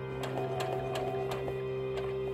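Baby Lock Soprano sewing machine stitching through fabric with a rapid, even ticking of the needle, over background music with long held notes.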